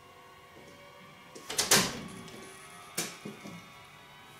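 An interior wooden door with a glass panel being opened: a sharp clack of the handle and latch about one and a half seconds in, then a smaller knock about three seconds in, over faint background music.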